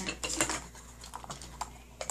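Small plastic and paper packaging being handled by hand: a run of light, irregular clicks and taps, busiest in the first half second, as the box is searched for its checklist sheet.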